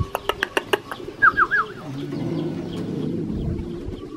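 Birds calling: a quick run of sharp ticks, then three short chirps about a second in, then a longer low call through the second half.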